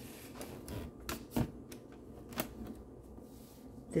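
A few light clicks and knocks with faint handling rustle as a hard-shell cooler is handled and its lid opened.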